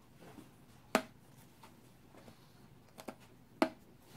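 Punch-needle embroidery pen poking into fabric stretched in a wooden embroidery hoop: short sharp taps, one about a second in and three close together near the end.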